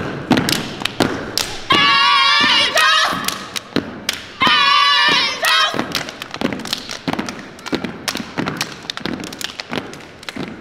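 Step team stepping: a rapid run of sharp foot stomps and hand claps on a hardwood gym floor, with two drawn-out shouted calls from voices about two and four and a half seconds in.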